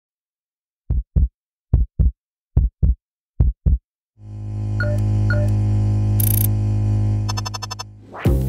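Electronic intro sound design: four heartbeat-like double thuds just under a second apart, then a loud sustained low synthesizer drone from about halfway, with two soft pings, a short high hiss and a fast stuttering flutter near the end.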